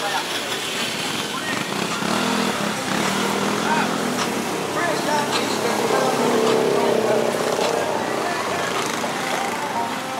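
Busy street traffic: motorcycles, motorcycle tricycles and cars driving past, with people's voices mixed in. The sound swells to its loudest about six to seven seconds in.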